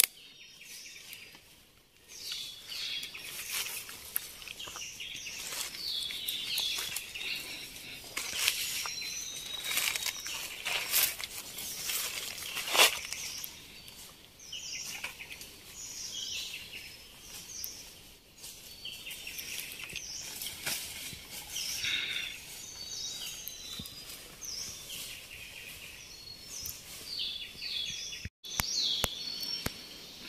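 Several forest birds chirping and calling in short, quick, falling notes, with scattered rustles and snaps of leaves and bamboo stems as someone pushes through undergrowth. The sound cuts out for an instant near the end.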